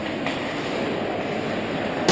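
Steady rumbling, scraping noise of a hockey game on an indoor ice rink: players' skates carving the ice.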